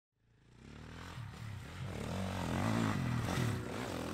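Dirt bike engine revving up and down as it rides, fading in from silence and growing steadily louder.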